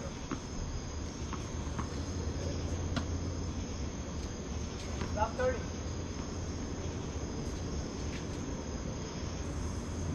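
Steady high-pitched chorus of crickets and other night insects, with a low steady hum beneath. A few sharp knocks of tennis balls are heard, and there is a short rising squeak about five seconds in.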